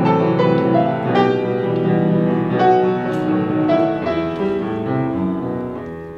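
Solo piano playing the introduction to a Korean art song: a slow, lyrical passage of chords and melody that grows softer near the end, just before the soprano's entry.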